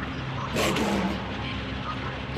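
A heavily distorted, glitched voice effect. One garbled burst comes about half a second in, with crackling static, over a steady noisy rumble.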